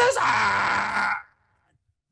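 A man's loud, drawn-out call of a giraffe's name, "Blizzard!", the call he uses to bring the giraffes running; the held vowel drops in pitch and the call stops about a second in.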